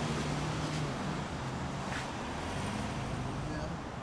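Indistinct men's voices talking in the background over a steady low rumble, with a single short knock about two seconds in.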